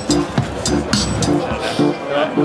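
Electronic music played on a dualo hexagonal-button synthesizer: a looped drum beat with crisp hi-hat-like clicks and short, repeated low pitched notes.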